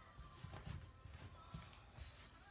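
Faint, soft bumps and rustling of a damp cotton T-shirt being pressed flat and pulled into its folds by hand on a tabletop.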